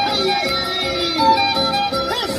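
Andean carnival folk music, with a violin carrying the melody over other instruments.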